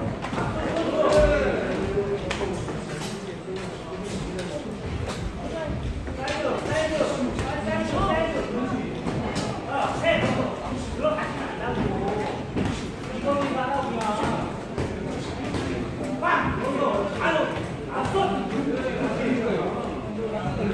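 Voices calling out and talking, echoing in a large hall, with scattered short thuds of gloved punches landing and boxers' feet on the ring canvas.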